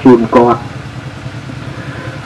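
A monk's sermon through a microphone breaks off about half a second in, leaving a steady low engine-like hum running underneath through the pause.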